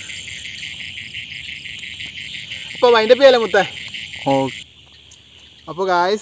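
Insects chirring in a fast, even pulse, typical of crickets. The chorus cuts off sharply about four and a half seconds in, leaving a fainter, steadier insect drone.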